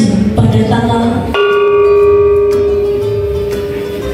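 A small bossed pot gong is struck once about a second and a half in and rings with one clear tone that fades slowly. Its brighter overtones die out about a second after the stroke. In the quiz this stroke is a team buzzing in to answer.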